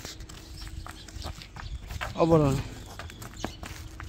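Hooves of a Simmental cow knocking on asphalt as it is led on a halter, a scattering of separate knocks. A short falling call, voice-like, about two seconds in.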